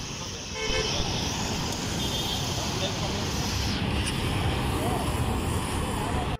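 City road traffic, with motor scooters, motorbikes and cars going by, and short horn toots under a second in and again about two seconds in.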